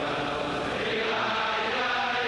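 A large crowd of men singing a Chassidic niggun together, with long held notes that slide slowly in pitch.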